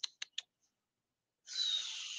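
Three quick computer clicks in the first half second, then quiet, and a breathy exhale into a headset microphone starting about a second and a half in.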